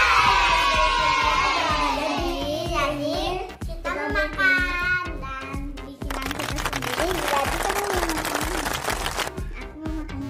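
Girls shrieking and cheering in high voices over background music with a steady beat, followed by a few seconds of hissing noise.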